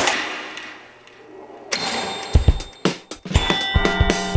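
Soundtrack of an animated TV channel ident: a whooshing swell fades away, then clicks and deep thumps start about halfway through. A steady bagpipe drone begins with rhythmic clicks near the end.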